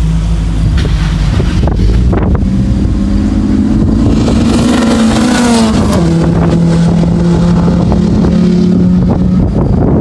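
Renault Clio RS hatchback engines accelerating hard. The pitch climbs for a few seconds, drops sharply at an upshift about six seconds in, then holds steady as the cars run by.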